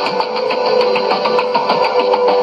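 Music received on a shortwave AM broadcast and played through a Sony portable receiver's speaker: steady held notes, with light clicks of static over it.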